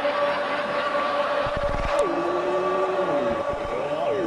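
Two men's voices holding long chanted notes at once, one steady and the other dropping to a lower pitch about halfway and sliding down further near the end, with a few low conga thumps.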